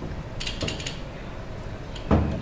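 Metal slotted spoon clicking against an aluminium cooking pot, a quick cluster of clicks about half a second in, over a steady low background hum.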